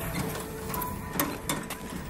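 A small boat's engine running with a steady, rapid mechanical chatter, with a few sharp clicks about halfway through.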